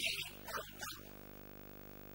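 A voice over the microphone for about the first second, then a pause in which only a faint, steady electrical hum of the sound system remains.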